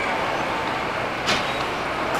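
Steady city street noise, mostly road traffic, with one short sharp hiss a little past halfway.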